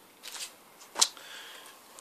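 LP record jackets in plastic sleeves rustling and sliding as they are handled and swapped, with a sharp tap about a second in.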